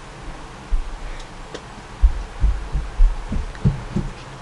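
A few irregular low, dull thumps, most of them in the second half, over a faint steady background.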